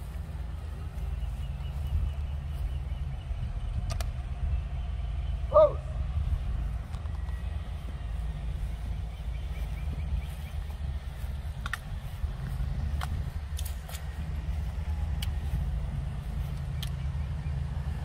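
Steady low outdoor rumble with a few faint sharp clicks, and a brief voice about five and a half seconds in.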